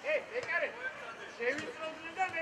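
Voices shouting short calls, several in quick succession, high-pitched like young players calling to each other.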